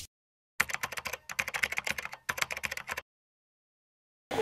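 Typing sound effect: rapid computer-keyboard key clicks in three quick runs with short breaks, starting about half a second in and stopping about three seconds in.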